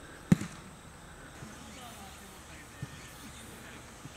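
A football kicked on a training pitch: one sharp thud about a third of a second in, then a much softer thump near the end.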